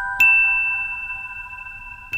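Slow lullaby music played on bell-like mallet notes: a single high note is struck just after the start and rings on, fading slowly over the still-sounding lower notes before it.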